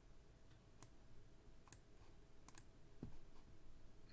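Faint computer mouse-button clicks, four or five short clicks a second or so apart, over a low steady hum.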